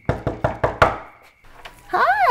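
Knuckles knocking on a wooden front door: a quick series of about five raps within the first second.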